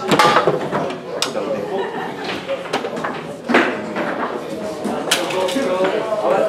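Sharp clacks of a foosball being struck and rods knocking on a Rosengart table during a rally, about six irregular hits, over background chatter.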